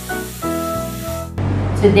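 A long, steady 'ffff' hiss, the phonics sound of the letter F made like air escaping a deflating toy fish, sounded over a children's phonics song with a simple tune. Both cut off suddenly about one and a half seconds in, and a woman starts speaking near the end.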